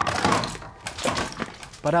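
A tennis ball hits a mounted deer-head trophy, knocking it off the wall so that it falls and crashes with a breaking sound: several sharp knocks and clatters in a small room.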